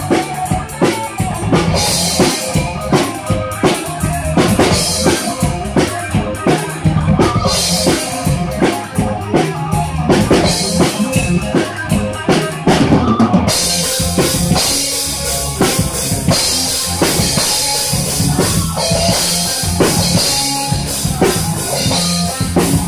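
Live band playing an instrumental metal piece, recorded right beside the drum kit, so the drums are loudest: bass drum, snare and cymbals over a bass guitar line. About thirteen seconds in, the cymbals become a constant wash.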